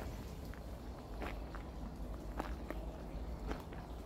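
Footsteps of a person walking slowly: about half a dozen faint, uneven steps over a steady low rumble.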